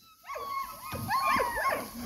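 German Shepherd whining: high, thin whines that rise and fall in pitch, starting about a quarter second in.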